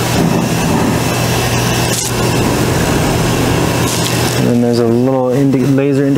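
AMADA BREVIS laser cutting machine running with a steady low hum while its cutting head is jogged down on the Z axis by hand control. A voice comes in over it during the last second and a half.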